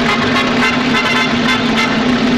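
Film-soundtrack orchestra holding a loud, sustained horn-like final chord over a steady low note, closing the skating number.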